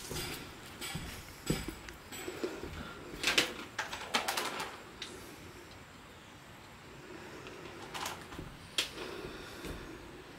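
Dry jungle vine rustling and scraping in short, scattered bursts as it is untangled and pulled by hand. A bird calls in the background.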